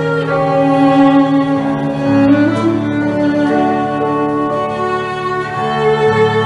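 Solo violin playing a slow melody in long, held notes over a recorded Clavinova digital-piano accompaniment of sustained low chords, which change about two seconds in.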